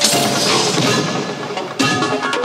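Progressive psytrance track in a break: synth and percussion layers play with the deep kick drum dropped out. A brief dip comes near the end, then a fresh hit.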